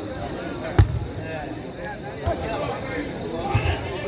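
A footvolley ball being struck by players during a rally: a sharp hit about a second in, then softer hits about halfway through and a quick pair near the end, over the chatter of spectators.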